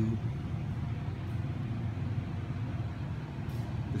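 A steady low rumble of room background noise, with no distinct knocks or impacts.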